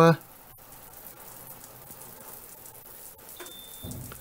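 Water running on and spattering from a Mira Advance ATL electric shower's head just after the shower is stopped, a steady faint hiss as the water drains from the heater tank. A brief high beep sounds near the end.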